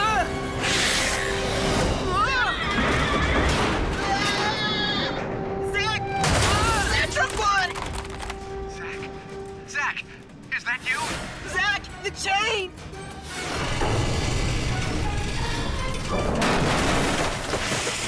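Action soundtrack of an animated series: music with a held tone mixed with sound effects, several booming hits, and wordless vocal cries.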